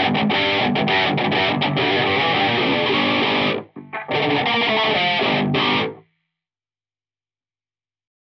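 Heavily distorted electric guitar played loud through an ENGL amp head and a Harley Benton 2x12 cabinet, with a Fortin 33 boost in front for a djent-style tone, picked up by a condenser mic in the corner of the room. The riffing breaks off briefly about three and a half seconds in, resumes, and cuts off abruptly about six seconds in.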